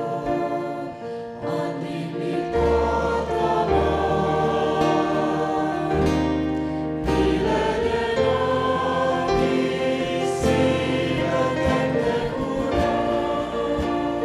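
A hymn sung by a small group of voices in harmony, backed by a worship band with acoustic guitar and a low bass line, with sustained chords that change every second or two.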